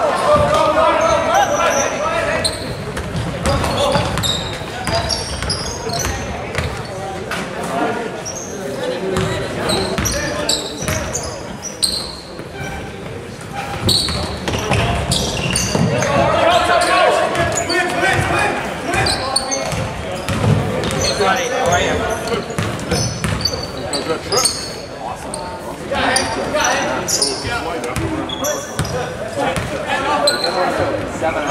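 A basketball dribbled and bouncing on a gym's hardwood floor during play, mixed with players' and spectators' voices in the echoing hall. Someone shouts "good", "wow" and "shot" near the end.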